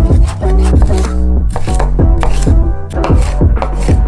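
Knife chopping chives on a wooden cutting board in a quick run of strokes, over background music.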